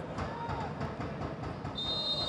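Referee's whistle starting a long, steady, high blast near the end, over the steady hum of a stadium crowd. The whistle stops play, with the referee's raised arm signalling an offside.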